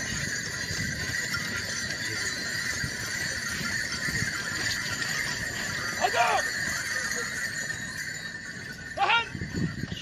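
A troupe of Arab-Barb horses moving in line, hooves on sand under a steady crowd-and-wind hubbub. A horse neighs twice, near the middle and again near the end, each a short loud falling call.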